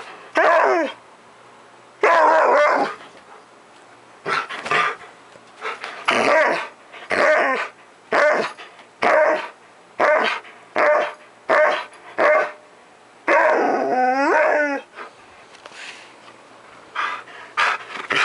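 Siberian husky barking and growling in rough play, short barks coming about once a second. About thirteen seconds in there is one longer wavering call, then a brief lull.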